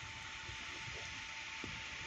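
Steady rushing of water pouring over the rim of a reservoir's bellmouth spillway, with a faint thin steady tone running through it.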